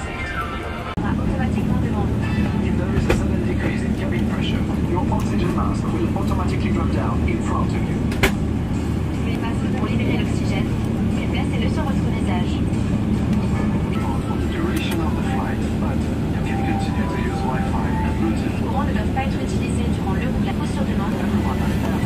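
Steady low drone of a jet airliner heard inside the cabin, coming up about a second in, with the in-flight safety video's narration faint over it.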